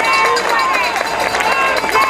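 Rally crowd chanting together in unison, with clapping.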